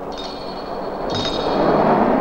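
Film soundtrack with two metallic clanging strikes, about a second apart, whose high ringing hangs on over a rush of noise that swells toward the end.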